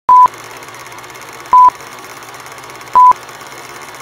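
Film-leader countdown sound effect: three short, loud beeps at one pitch, about a second and a half apart, over a steady hiss.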